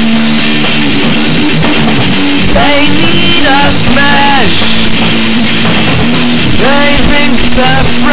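Rock band playing an instrumental passage: drum kit and guitar at a loud, even level. A higher pitched line slides up and down in short phrases, about three times.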